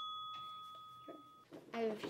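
The fading ring of a bell-like chime sound effect, a single ding dying away over about a second and a half. Faint taps and the start of a child's word follow near the end.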